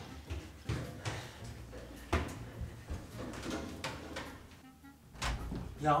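Hurried footsteps thumping up a wooden staircase, about ten irregular thuds, then a louder knock and rustle about five seconds in as a door is pushed open.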